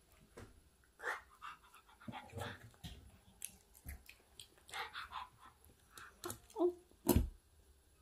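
Fork tapping and scraping on a plate, with small eating and mouth noises, a few brief whine-like vocal sounds a little after six seconds in, and a loud knock about seven seconds in.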